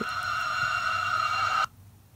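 A steady electronic tone, several pitches sounding at once, playing through a smartwatch's small speaker from the live TV stream in its web browser. It cuts off suddenly about one and a half seconds in, as the browser tab closes.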